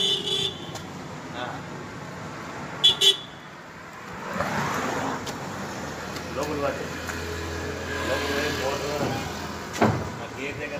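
Indistinct background voices over general street noise, with a brief high horn-like tone at the start. There are two sharp knocks about three seconds in and another just before the end.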